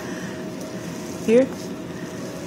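Steady whir of a salon hood hair dryer with a faint constant hum, under one short spoken word.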